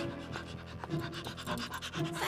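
A dog panting quickly and rhythmically, a cartoon sound effect for a small white bulldog, over soft background music.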